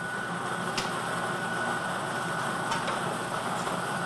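Lottery ball machine running: a steady mechanical whir with a few faint clicks as a numbered ball is drawn up into its clear acrylic capture chamber.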